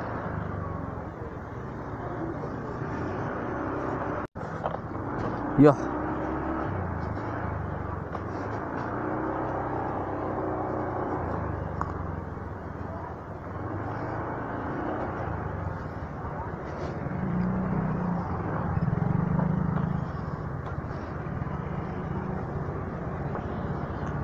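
Motorcycle engine running at low speed as the bike rolls slowly, growing a little louder about three quarters of the way through.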